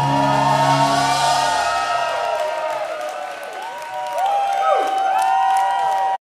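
A black metal band's last sustained chord rings and cuts off about two seconds in, under a club crowd cheering, whooping and whistling at the end of the song.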